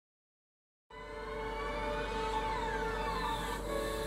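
Silence for about the first second, then music starts abruptly: layered sustained tones with several slow downward-sliding notes over a low steady hum.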